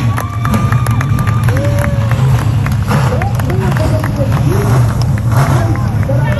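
A full field of dirt modified race cars' V8 engines running together in a steady low rumble, with spectators' voices over it.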